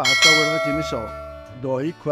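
A bell-like notification chime sound effect from a subscribe-button animation, struck once and ringing out over about a second and a half.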